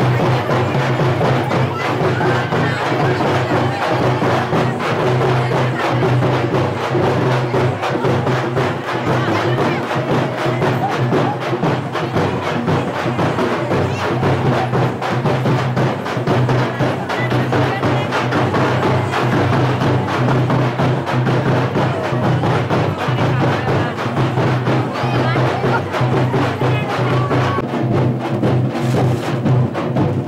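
Loud percussion music with a fast, steady drum beat that runs on without a break.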